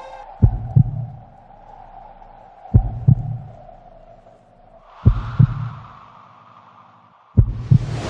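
Heartbeat sound effect in a song intro: four double thumps, lub-dub, about every two and a half seconds, over a faint held tone. A soft rushing swell comes in about five seconds in.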